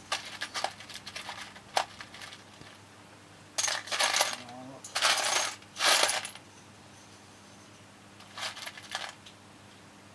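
Loose metal nuts and bolts rattling and clinking in a metal biscuit tin as a hand rummages through them. It comes in several bursts, the loudest in the middle, with a shorter one near the end.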